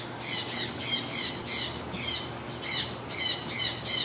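A bird calling nearby: a run of short, repeated calls about three a second, in two bursts with a brief pause near the middle.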